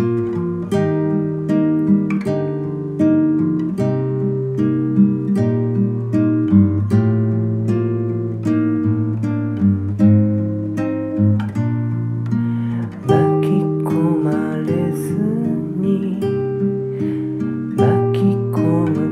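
Song music: an acoustic guitar picking and strumming chords in a steady rhythm, with no singing for most of the passage. About 13 seconds in, a higher wavering melody line joins.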